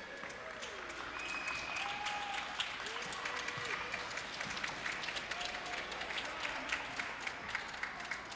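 Applause from a small audience: many separate hand claps, with a few voices calling out among them, for a skating program that has just ended.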